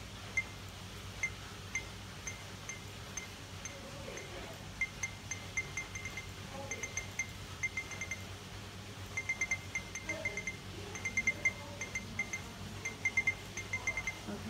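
S95 handheld barcode scanner beeping each time it decodes a barcode in continuous scan mode: short, identical high beeps, scattered at first, then coming in quick runs of several as the scan line sweeps along the row of barcodes.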